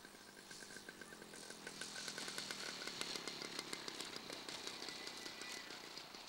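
Small engine of a radio-controlled scale warbird model running at low throttle as it rolls across the grass after landing. It is faint, growing louder about two seconds in and easing off toward the end.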